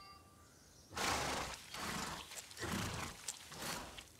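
Cartoon sound effect of snails munching cabbage leaves: a run of irregular, noisy crunches that starts about a second in.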